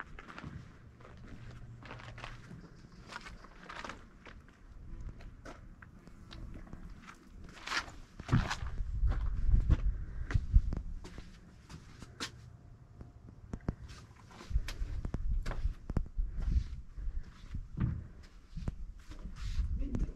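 Footsteps of a person walking on the paved and gravel paths, coming about two a second near the end. There is also a low rumble, loudest about eight to eleven seconds in.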